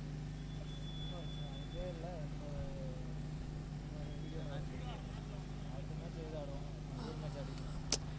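Faint background of a steady low hum with distant, indistinct voices, and one sharp click just before the end.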